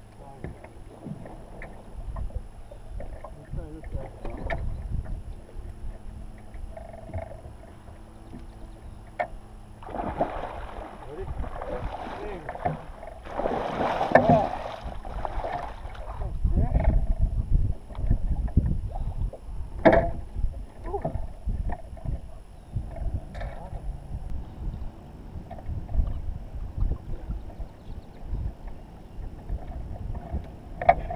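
A hooked muskie thrashing and splashing in the water beside a fishing boat as it is netted: several seconds of splashing near the middle, with a low rumble throughout and scattered sharp knocks afterwards.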